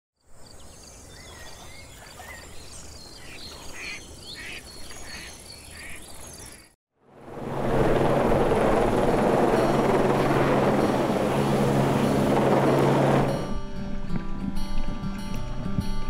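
Faint ambience with scattered chirping calls, then a helicopter hovering overhead: loud, steady rotor and engine noise with a low hum for about six seconds. The noise cuts off and music starts near the end.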